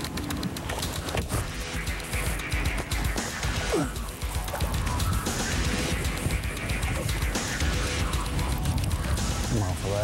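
Wind buffeting the microphone in a low, rough rumble out on open water, with a short falling vocal sound a little before four seconds in.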